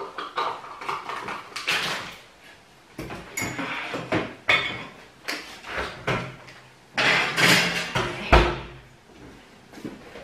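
Groceries being unpacked from a reusable shopping bag onto a kitchen counter: irregular rustling and knocks as items are pulled out and set down, with one heavier thump about eight seconds in.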